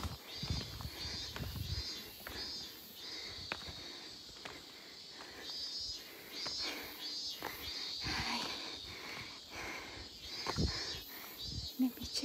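Cicadas calling in a high-pitched chorus that swells and fades in repeated pulses, with footsteps on a path. There is low rumbling from wind or handling on the microphone in the first two seconds.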